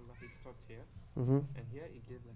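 Speech: a man talking quietly, with one louder drawn-out vowel for a moment just over a second in.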